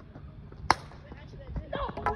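A bat strikes a plastic wiffle ball once, a single sharp crack less than a second in, the hit that puts the ball in play; voices start shouting near the end.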